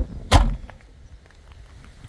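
The rear hatch of a Volkswagen New Beetle slammed shut: one loud, sharp slam about a third of a second in.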